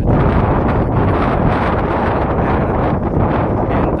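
Loud, steady wind buffeting the microphone.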